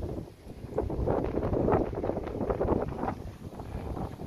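Wind blowing across the microphone, coming in uneven gusts.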